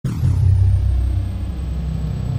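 A deep, steady rumble that starts abruptly, with a thin high sweep falling away in the first half second.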